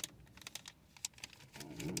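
A handful of faint, irregular clicks and taps against a quiet background, like small handling noises. A voice starts speaking near the end.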